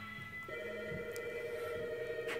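Background music playing, with a steady warbling tone held from about half a second in.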